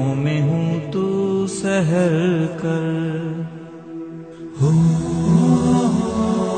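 Wordless vocal interlude of a naat: layered voices hold long sustained tones in a chant-like drone, with a wavering, ornamented lead line about two seconds in. The sound thins out and drops quieter for about a second, then a fuller chorus of voices comes back in strongly near the end.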